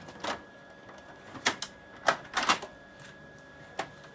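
Sharp plastic clicks and clacks from a Kyocera 5551ci copier's paper cassette as its paper guides are moved and set: about six clicks, some in quick pairs.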